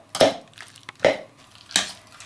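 Kitchen knife chopping down into chunks of under-ripe avocado in a bowl: three sharp strokes, about three quarters of a second apart.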